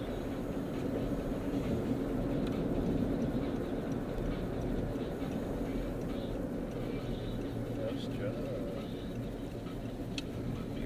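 Steady road and engine noise inside the cabin of a car driving along a city street.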